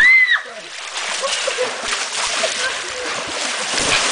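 Pool water splashing continuously as several people wade fast through a small above-ground pool, with many short splashes. A high shout rings out at the very start, and voices come and go over the water.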